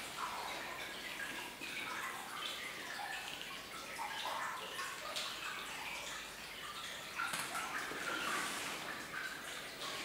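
Water dripping into a flooded mine shaft: many small, scattered drips over a faint steady wash of trickling water.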